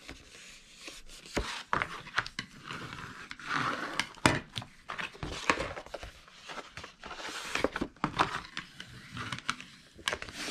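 A scored sheet of wrapping-paper-faced card being handled and folded along its score lines by hand: irregular crinkling and rustling of the paper, with many short sharp creasing taps.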